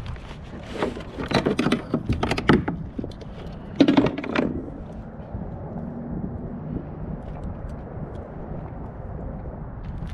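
Clicks and knocks of fishing tackle being handled on a kayak, a lip-grip tool and pliers, while a small halibut is unhooked, with one louder thump about four seconds in. After that only a steady low rush of background noise.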